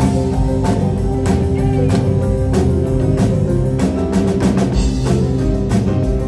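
Live country band playing an instrumental passage: strummed acoustic guitar, electric guitar and keyboards over a drum kit keeping a steady beat.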